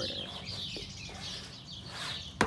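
Birds chirping continuously, a busy run of short high calls overlapping one another.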